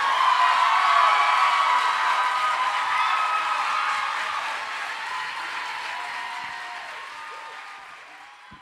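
Audience applauding and cheering with whoops, loudest at the start and dying away toward the end.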